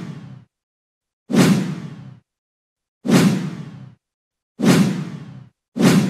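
A run of whoosh sound effects, four of them about every second and a half, each starting suddenly with a low thud and fading out in under a second.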